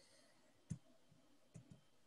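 Near silence broken by a few faint computer-mouse clicks: one about two-thirds of a second in, then two close together near the end.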